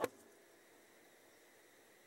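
Near silence: faint room tone, with the tail of one sharp click right at the start.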